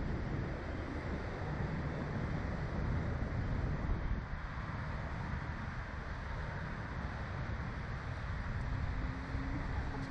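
Wind noise on the microphone of a camera mounted on a Slingshot ride capsule, a steady rumble.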